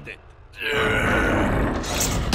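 A man's loud, drawn-out grunt beginning about half a second in, with a low rumble beneath it.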